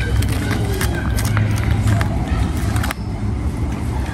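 A cat eating wet food from a foil tray: quick, sharp chewing and lapping clicks that stop about three seconds in, over a steady low rumble.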